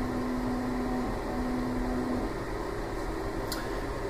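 Steady fan hum of lab equipment and room ventilation, with a steady low tone that drops out about two seconds in. A single light click comes near the end.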